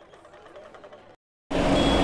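Faint crowd voices, then a sudden drop to silence. About a second and a half in, loud street noise starts abruptly, with a vehicle engine running.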